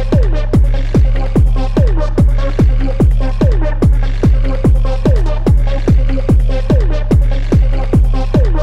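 Hard techno track: a kick drum hits about twice a second over a deep bass, with a held synth note and a short falling synth sweep that repeats about every second and a half.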